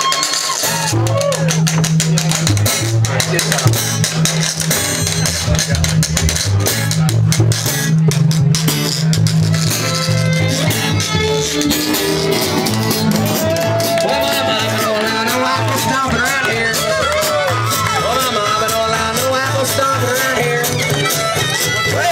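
Live string band playing: upright bass holding a steady low line under acoustic guitar, with washboard scraping and a fiddle. A busy rhythm of short clicks fills the first half, and a higher, bending melody line comes in about halfway.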